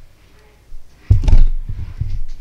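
A man's low, loud voiced sound starting about a second in, with no clear words.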